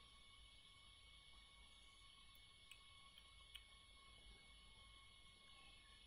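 Near silence: room tone with a faint steady hum and two faint clicks near the middle.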